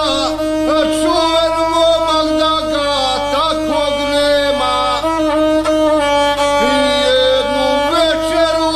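A gusle, the single-string bowed folk fiddle of the Dinaric region, playing a continuous ornamented melody with a steady held note beneath.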